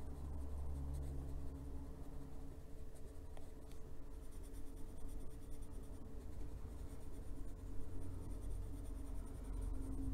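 Faber-Castell Polychromos colored pencil scratching lightly on paper in small shading strokes, with a low steady hum underneath.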